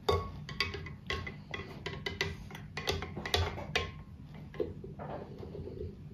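A spoon stirring salt into a glass of water, clinking against the glass in irregular taps a few times a second, some with a faint glassy ring.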